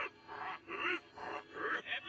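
Animated-film character voices played backwards: a run of short, garbled vocal bursts about twice a second, heard through a TV speaker.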